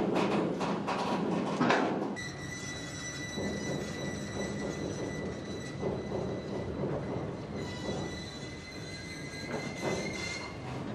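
Rocket transporter railcar rolling slowly along the track, with dense clattering for the first two seconds. After an abrupt change it becomes a quieter rumble with a steady high-pitched whine.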